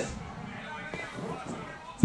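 Faint speech under low room noise, with a light click about a second in.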